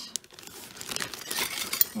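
Clear plastic zip-top bag crinkling as hands rummage through the jewelry inside it, with a sharp click near the end.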